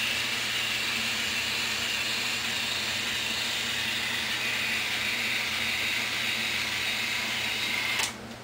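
Instyler rotating hot iron running as a section of hair is drawn through its spinning barrel and brush: a steady whir and hiss that cuts off suddenly at the end.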